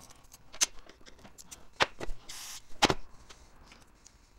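Small carburetor parts and screws being handled and set down on a workbench, with three sharp clicks about a second apart and a brief soft hiss shortly before the third.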